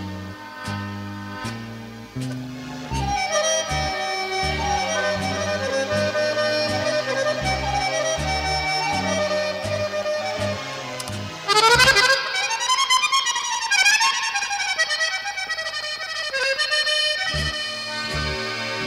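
Instrumental passage of a 1981 Yugoslav folk-pop song: an accordion plays the melody over a stepping bass line. About two-thirds through the accordion plays a loud, fast rising run and flourish, the bass drops out, and the bass comes back in near the end.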